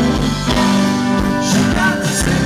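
Live rock band playing on electric guitar, bass guitar and drums, loud and steady.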